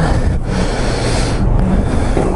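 Wind rumbling on the microphone, with a louder hissing rush lasting about a second in the middle.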